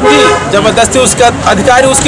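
A man talking emphatically in Hindi, with a vehicle horn sounding once, steadily, for about half a second at the start.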